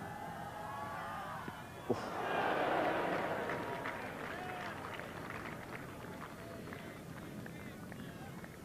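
A cricket bat striking the ball with a single sharp crack about two seconds in, followed at once by the crowd cheering and applauding, which swells and then fades away over the next few seconds.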